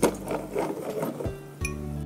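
A spatula stirring and scraping in a frying pan of thick sauce, a rapid clatter for the first second or so and one more knock near the end, over background music.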